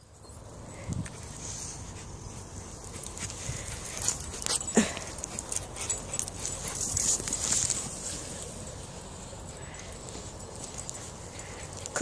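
Dogs on leads moving about close to the phone, with rustling and handling noise and scattered clicks; one dog gives a short whine about five seconds in.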